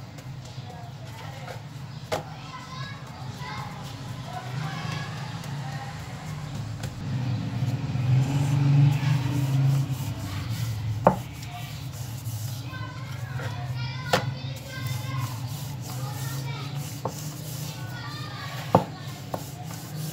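Wooden rolling pin rolling out stuffed paratha dough on a wooden board, with a few sharp knocks of wood on wood. Faint children's voices chatter in the background throughout.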